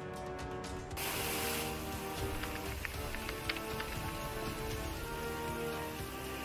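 Heavy rain hissing on a street, starting suddenly about a second in with a loud burst of hiss and then going on steadily with a few sharp drop ticks, under background music.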